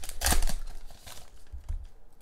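Foil booster-pack wrapper crinkling and tearing as it is pulled open by hand. Several sharp crackles come in the first half second, then it fades to a few faint ticks.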